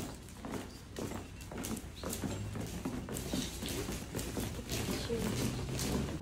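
Irregular sharp clicks and knocks over a murmur of voices and a low steady hum.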